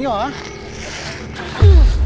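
Plastic sheeting rasping and sliding as a tape-wrapped body is dragged. About a second and a half in, a sudden loud, deep boom cuts in, the loudest sound here, and its low rumble carries on.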